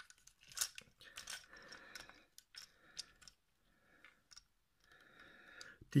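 Hard plastic parts of a Transformers action figure clicking and rubbing faintly as they are folded and turned by hand, with a few separate clicks scattered through.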